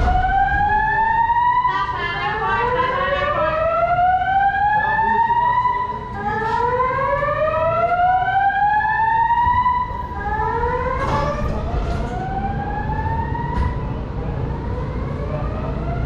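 Emergency vehicle sirens wailing, two or more overlapping, each tone rising slowly in pitch over a few seconds and starting again, over a low rumble with a few short knocks.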